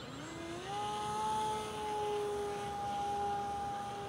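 Electric motor and propeller of an FT Edge 540 RC aerobatic plane in flight: the whine rises as the throttle opens in the first second, holds steady, then drops away at the end. The flier finds the setup running a little light on power.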